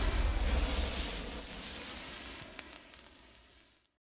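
Hissing sizzle of a logo being branded into wood, a stinger sound effect, with a few faint crackles, fading steadily away to silence just before the end.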